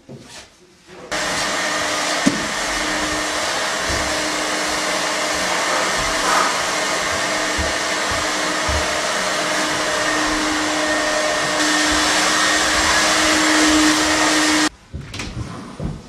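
Steady whooshing drone of an electric blower motor running at constant speed, with a low hum under it. It starts abruptly about a second in and cuts off abruptly near the end.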